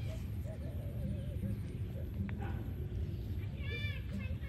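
A baby macaque gives a short, high-pitched, arching squeal near the end, over a steady low rumble.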